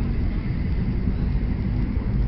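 Wind buffeting the camera microphone: a steady, uneven low rumble.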